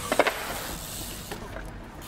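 Steady hiss of outdoor background noise, with a brief vocal sound at the very start.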